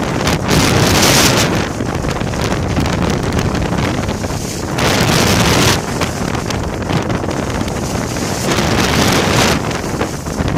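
Wind buffeting a handheld phone's microphone during a fast ski run, mixed with the hiss of skis over the snow. The hiss swells three times: about a second in, midway, and near the end.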